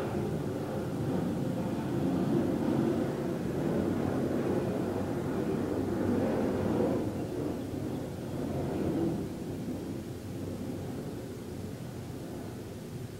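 Low rumble of a passing vehicle, building to its loudest about six or seven seconds in and dying down after about nine seconds.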